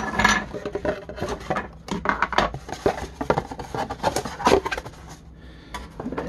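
Cardboard box and packaging rustling while a hard plastic playset piece is lifted out and set down on a table, with scattered light knocks and scrapes; the loudest rustle comes right at the start.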